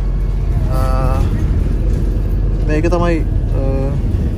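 Steady low rumble of a city bus's engine and road noise heard from inside the passenger cabin, with a voice rising briefly over it twice, about a second in and near the end.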